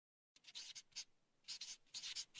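Faint pen-on-paper scratching sound effect, a quick run of short strokes starting about half a second in, as if hand-lettering a line of text.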